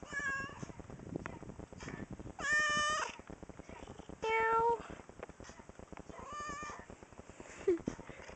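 A domestic tabby cat meowing repeatedly right at the microphone: four meows about two seconds apart, the middle two the loudest.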